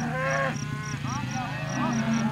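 A herd of beef cattle mooing as it is driven along, with one call near the start and two shorter ones in the second half.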